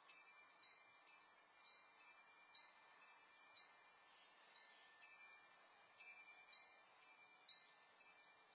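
Faint wind chime ringing: light, tinkling strikes at irregular intervals, roughly one or two a second, each note hanging on briefly.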